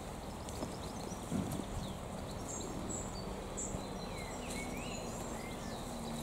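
Songbirds in the trees chirping and whistling in short, scattered calls over a steady low outdoor rumble.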